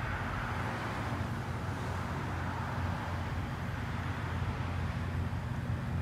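A car driving along: steady low engine and road noise.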